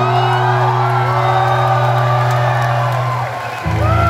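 Live rock band music played loud over a concert PA: a long held low note that stops near the end, with whoops and cheers from the crowd over it.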